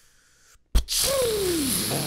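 Cartoon rocket blast-off sound effect: a faint hiss, then a sudden burst about three-quarters of a second in, turning into a loud rushing noise with a tone that falls in pitch.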